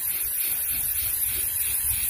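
Aerosol can of Rust-Oleum Army Green camouflage spray paint spraying in one steady hiss as a coat goes onto metal.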